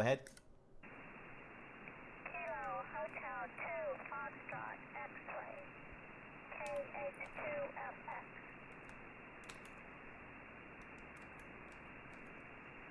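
A distant amateur station's voice received on 40-metre single sideband, weak and thin over steady band hiss. The receiver's narrow audio filter cuts off everything above its passband. The voice comes in two short stretches as the station gives her call sign, with scattered keyboard clicks.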